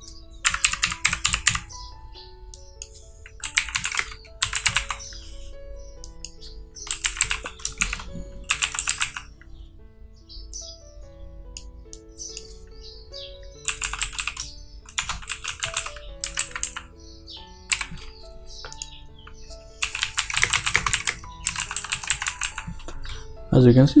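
Typing on a computer keyboard in several bursts of rapid keystrokes with pauses between them, over soft background music.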